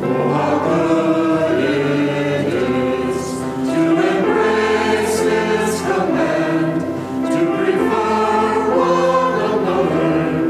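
Mixed church choir of men and women singing a hymn in English, coming in right at the start.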